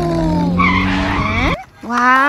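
Vehicle engine and skid sound effect, its pitch falling steadily over a low drone, with a screech in the middle; it cuts off suddenly about one and a half seconds in.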